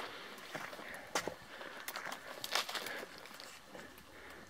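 Faint footsteps through dry sagebrush, about one step every two-thirds of a second.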